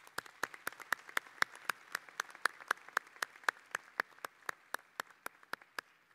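Audience applause, with one person's claps close to the microphone standing out at an even pace of about four a second over lighter clapping from the rest of the crowd; it thins out near the end.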